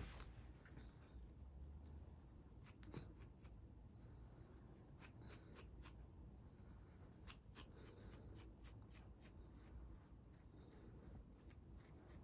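Scalp being scratched through the hair to lift dandruff flakes: faint, quick scratchy strokes, some coming in short runs.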